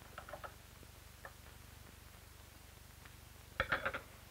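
Electric sewing machine running steadily, a faint rapid ticking of stitches, with a short cluster of louder clicks near the end.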